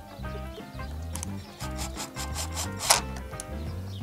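Background music, with wood being handled on the worktable: a few clicks and rubbing scrapes, the loudest a sharp knock about three seconds in.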